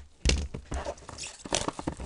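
Gloved hands handling sealed cardboard trading-card boxes: a sharp knock just after the start as a box is taken off the stack, a brief rustle about a second in, then a few small clicks and taps.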